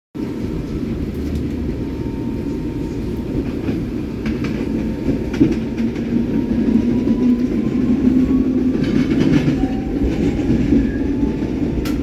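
Electric commuter train running, heard from inside the carriage: a steady rumble with a faint whine that slowly rises in pitch as the train picks up speed, and a few clacks from the wheels on the rails.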